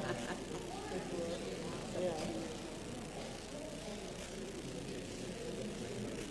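Indistinct murmur of several people talking at once, with no words clear.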